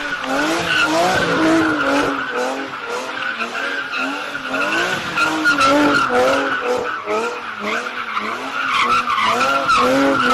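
BMW E46 coupe drifting in circles: the rear tyres squeal steadily under wheelspin while the engine revs rise and fall rapidly, again and again, with the driver working the throttle.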